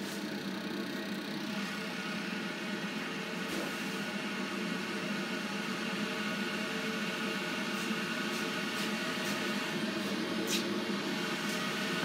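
Creda Debonair spin dryer spinning at speed: the steady hum of its motor and drum, holding one even pitch and level throughout.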